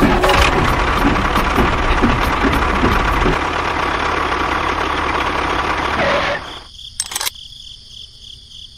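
Tractor engine running with a low rumble and irregular knocking for the first few seconds, then steadier, cutting off sharply after about six seconds. Steady cricket chirring and a couple of clicks follow.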